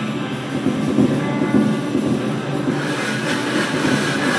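Improvised noise music: a drum kit played in a continuous rolling clatter under a dense, steady drone with several held tones.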